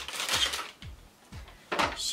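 Packaging being handled: a cardboard box opened and a plastic pack with a selfie stick inside pulled out, crinkling and rustling. A burst of handling noise at first, a brief lull, then another short crinkle near the end.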